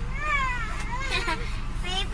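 A young child's high-pitched, sing-song voice, sliding up and down in pitch, over the steady low rumble inside a moving car.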